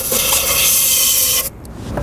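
Compressed air hissing from a nozzle in one continuous blast, blowing loose carbon brush dust out of a switch machine's electric motor housing. It cuts off sharply about one and a half seconds in.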